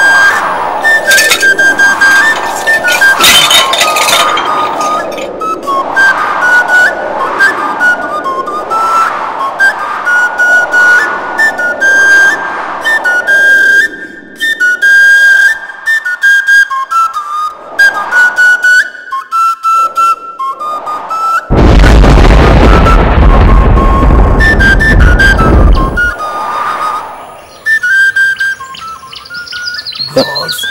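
Film background music: a high flute-like melody of short held notes over repeated sweeping swells. A loud rushing noise with a deep rumble comes in a little past the middle and lasts about four seconds.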